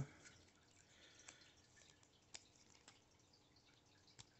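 Near silence with a few faint ticks as hands handle foil trading-card packs.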